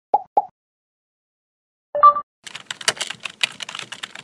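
Animated-outro sound effects: two short pops just after the start, a brief tone about two seconds in, then a rapid clatter of computer-keyboard typing from about halfway through.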